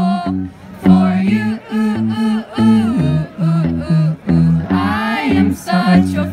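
Live band music: an electric guitar playing chords over low bass notes, with a male voice singing over it.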